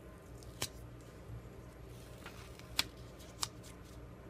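Printed sticker paper being handled as a kiss-cut sticker is peeled off its backing sheet: faint paper rustling with a few sharp crackles of the paper.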